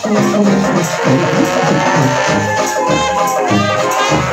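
Live traditional New Orleans jazz band playing: horn lines, one sliding up and back down midway, over a steady beat of bass notes.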